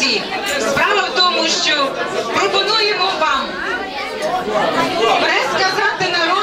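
Several voices talking over one another: the chatter of guests at banquet tables in a large hall.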